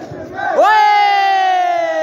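A spectator's long, loud shout of "oye!" begins about half a second in and is held on one drawn-out note that slowly falls in pitch, over the background noise of a crowd.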